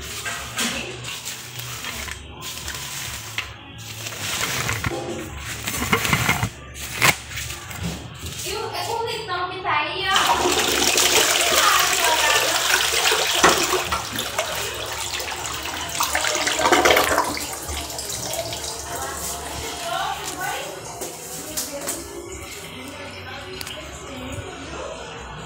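Deca Izy close-coupled toilet flushing paper away: a loud rush of water starts about ten seconds in, lasts some seven seconds, then dies down.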